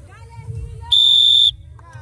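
A single short, steady high-pitched tone about a second in, lasting about half a second: the start signal for the competitor's turn. Faint voices of onlookers underneath.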